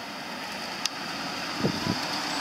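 A car driving slowly toward the listener on a narrow road, its engine and tyres growing gradually louder as it approaches.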